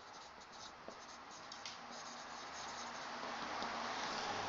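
Faint scratching of a marker pen writing a short phrase on a whiteboard, a quick run of strokes.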